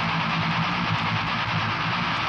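A steady, muffled mechanical drone like a running vehicle engine, dull and lacking treble.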